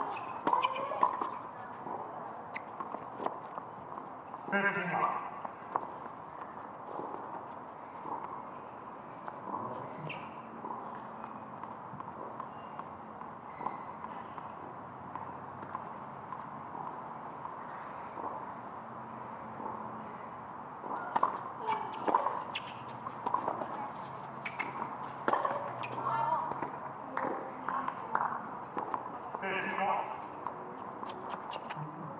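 Tennis balls struck by rackets and bouncing on a hard court during doubles rallies: sharp pops in clusters, with short voice calls from players at about five seconds and again near the end.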